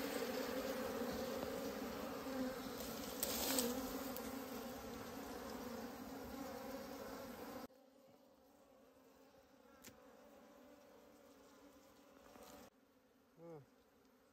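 Honeybees buzzing in a steady drone around their dug-open ground nest. About eight seconds in the buzz drops abruptly to a much fainter hum.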